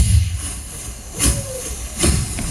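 Vocal beatboxing through a handheld microphone: the low kick-drum beats drop out and a long, steady hiss carries on, with a sharper accent and a short sliding vocal tone a little past the middle.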